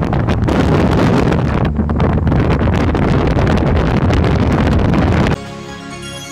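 Loud, harsh, distorted noise with a heavy low rumble that cuts off abruptly about five seconds in. Quieter music starts after the cut.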